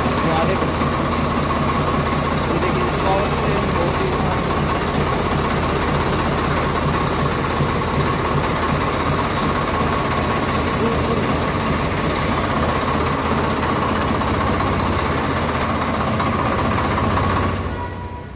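Swaraj 744 XT tractor's three-cylinder diesel engine idling steadily, then shut off about half a second before the end.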